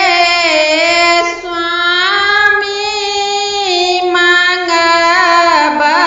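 A woman singing a devotional folk song to the goddess Gauri, one unaccompanied voice drawing out long held notes that slide and turn between pitches.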